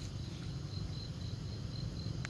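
An insect chirping: a high, pulsing note about four times a second, over a low rumble.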